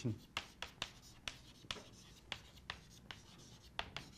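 Chalk writing on a blackboard: a string of irregular sharp taps and short scratches as the chalk strikes and drags across the slate.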